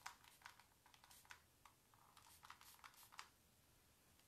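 Faint, irregular light taps and clicks of a paintbrush dabbing small touches of blue paint onto a painted wooden dresser, stopping a little before the end.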